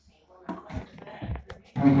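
Plastic toys being handled close to the microphone: a few light knocks and clicks. Near the end, a child says a loud 'uh-huh'.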